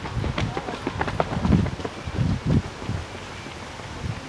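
Footfalls of a group of runners passing close by on an asphalt road: running shoes land in uneven thuds as several runners' strides overlap, with a few short sharper slaps among them.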